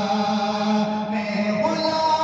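A man's unaccompanied melodic recitation sung into a microphone: he holds one long note, then steps up to a higher pitch near the end without a break.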